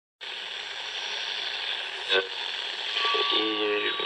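Produced podcast intro sound effect: a steady static-like hiss, a sharp click a little after halfway, then a held electronic tone with other tones and a falling sweep joining near the end.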